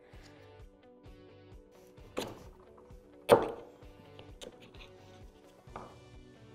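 Two sharp knocks about a second apart, the second louder, as metal shock linkage parts are set down on a wooden workbench, with a smaller knock near the end, over quiet background music.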